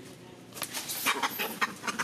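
A macaque giving a rapid series of harsh, chattering calls, starting about half a second in.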